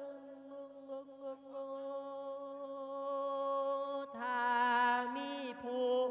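A monk's voice singing lae, the melismatic sung sermon style of Thai Isan Buddhism, through a microphone. He holds one long note for about four seconds, then comes in louder with a new phrase whose pitch wavers.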